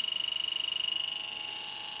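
TDS-II termite detector's alarm sounding a continuous high-pitched electronic tone with a fast flutter, triggered by the carbon dioxide from termites as its probe is held close to them.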